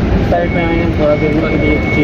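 A man's voice talking over the steady low rumble of city-street traffic. About half a second in, a thin, steady, high-pitched whine joins in and holds.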